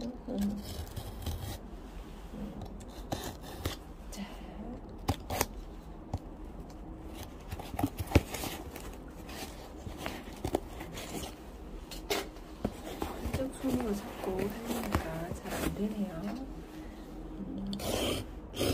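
Utility knife blade cutting and scraping through packing tape and cardboard on a shipping box, in irregular scrapes and sharp clicks, the loudest click about eight seconds in.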